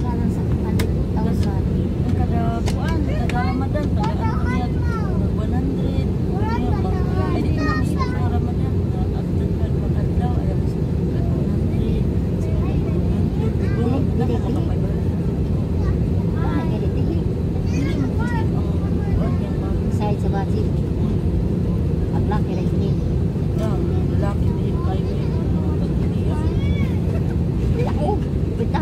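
Airliner cabin noise in flight: a loud, steady, low rumble that never changes in level. Voices come and go over it.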